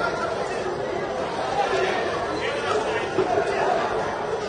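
Crowd chatter in a large hall: many voices talking and calling out at once, with no single speaker clear.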